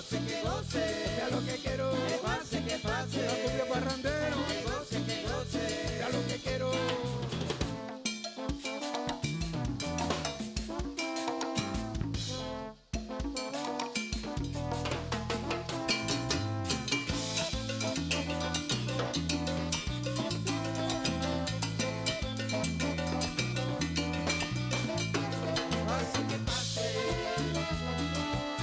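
Live cumbia band playing an instrumental passage with no singing: saxophone, clarinet and trombone over drum kit and hand drums, with a steady beat. About halfway through, the band stops dead for a moment and then comes back in.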